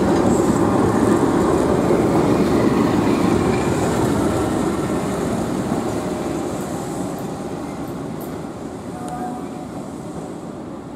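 Keihan 700-series two-car train running past close by on street-running track, its wheels rolling on the rails. The sound is loud at first and fades steadily over the last several seconds as the train draws away.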